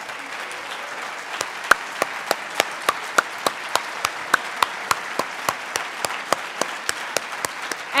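Audience applauding, with one person's hand claps close to the microphone standing out as sharp, regular claps about three a second from about a second and a half in.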